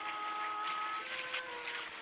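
Background score of held notes whose pitches shift about halfway through, with faint, irregular clops of a horse's hooves at a walk.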